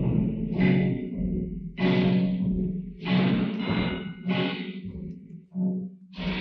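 Film score music: five loud accented chords about a second and a quarter apart, each ringing out over a steady low note, the last one softer.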